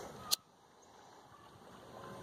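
Faint lakeshore ambience of water lapping gently at the rocks, slowly growing louder, with a single sharp click about a third of a second in.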